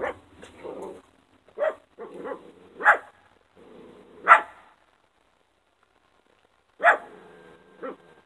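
A dog barking in short single barks, the loudest about four seconds in, then a pause of about two seconds before two more barks near the end.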